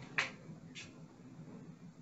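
A short sharp click about a fifth of a second in and a fainter one just before the one-second mark, over quiet room tone.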